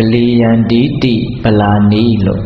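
A Buddhist monk intoning in a held, chant-like voice during a sermon, in two drawn-out phrases with a short break about a second in.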